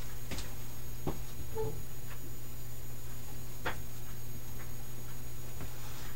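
A steady low hum with a few faint, scattered clicks.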